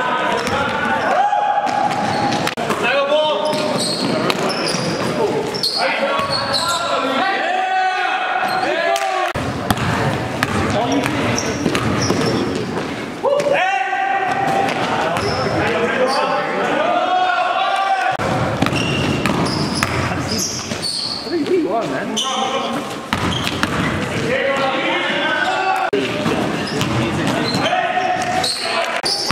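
Basketball game sounds in a gym: players' voices calling out indistinctly over the ball bouncing on the hardwood floor and short, high sneaker squeaks, echoing in the large hall.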